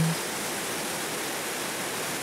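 Glacier-fed waterfall plunging through a narrow rock gorge: a steady, dense rush of falling white water.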